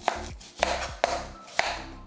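Kitchen knife cutting a red onion on a plastic cutting board: four sharp strikes of the blade on the board, about half a second apart.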